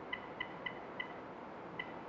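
Short electronic keypad beeps, one per key, as a phone number is dialled: four quick beeps in the first second, then one more near the end.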